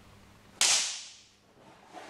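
One sharp swish of a wooden practice sword cutting down through the air, starting suddenly about half a second in and fading away over about half a second.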